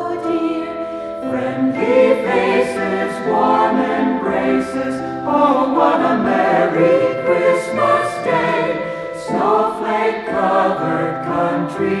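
A choir singing a Christmas song, with held, sustained chords; sung words start near the end.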